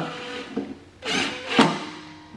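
A 5/16-inch socket turning a screw down into a mower's belt-cover clip, with a short scraping sound about a second in and a brief click soon after.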